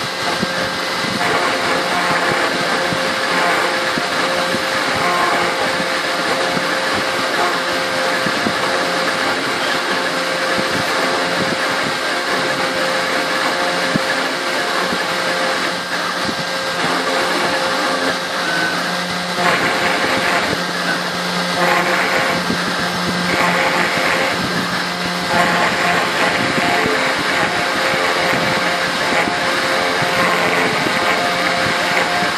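Spindle of a 3040T desktop CNC router running steadily at 10,000 rpm while a 90° engraving bit cuts a vector pattern into an aluminium panel: a steady whine with a scratchy cutting noise that swells and fades several times as the bit moves between strokes.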